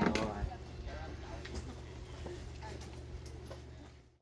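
Faint outdoor background sound: a low steady hum with a voice trailing off at the start and scattered light clicks, fading out near the end.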